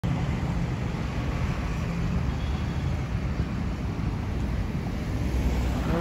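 Road traffic: cars passing on the street, a steady low rumble.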